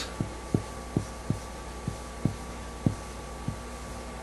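Felt-tip marker writing on a board: a run of short, dull knocks, about two a second, as the letters are stroked on, over a steady faint electrical hum.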